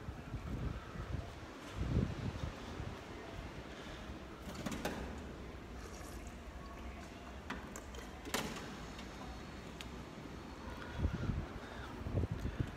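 Quiet low background rumble, with a few short sharp clicks: one about five seconds in and one about eight seconds in.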